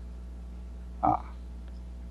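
Steady low electrical hum, with one brief low throat sound from a man, about a second in.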